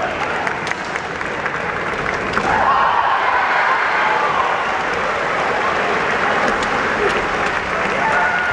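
Kendo fencers' long, wavering kiai shouts over the steady din of a crowded gymnasium, with a few sharp clacks of bamboo shinai. The longest shout comes a little over two seconds in and lasts about two seconds.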